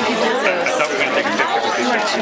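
Several people talking at once: the overlapping chatter of a small gathering, with no single voice standing out.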